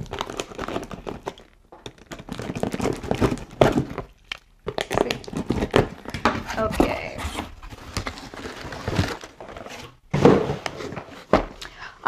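Box cutter slicing through packing tape on a cardboard box, then the cardboard flaps being pulled open and the contents rustling and crinkling as a boxed item is lifted out, with a few knocks of cardboard on the table.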